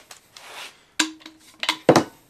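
A cordless drill and a plastic ABS pipe being handled on a workbench: a few sharp knocks and clicks, the loudest just before the end.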